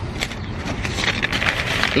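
Paper sandwich wrapper crinkling and rustling in a rapid run of small crackles as hands unwrap a chicken sandwich.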